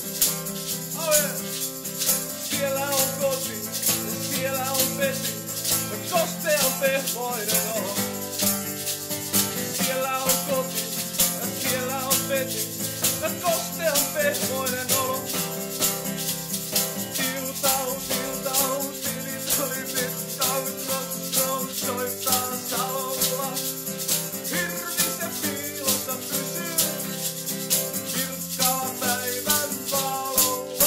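Acoustic guitar strumming chords while an egg shaker keeps a steady, fast rhythm, with a wavering melody line above, the instrumental part of an unplugged acoustic rock song.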